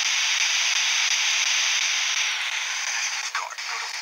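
Steady radio static hiss, as from a ghost-hunting spirit box, easing slightly past halfway, with a brief voice-like fragment near the end.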